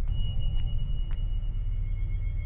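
Eerie film-score music: a steady deep drone, with a high, sustained ringing tone that comes in at the start.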